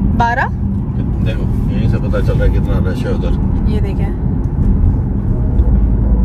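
Inside a moving car's cabin: steady low road and engine rumble with a faint constant hum, deepening slightly near the end.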